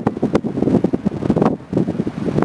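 Strong wind buffeting the microphone: a loud, uneven low rumble that eases briefly near the end.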